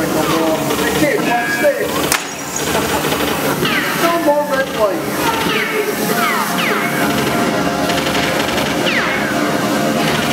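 Dark-ride show audio: voices and background music, with a sharp crack about two seconds in and several short falling whistle-like tones later on.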